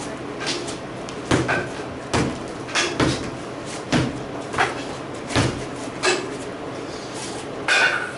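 A practice broadsword strikes a freestanding torso training dummy in a string of about nine dull knocks at an uneven pace, roughly one a second. The hardest hits come just over a second in and near the end.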